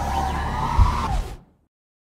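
Logo-intro sound effect: rising synth sweeps over a low rumble, with a deep bass hit about 0.8 seconds in. It fades out at about a second and a half.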